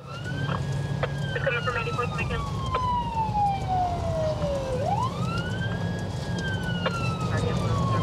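Police siren wailing, its pitch falling slowly for about four seconds, rising quickly about five seconds in, then falling again, over the steady low rumble of the patrol car driving in pursuit.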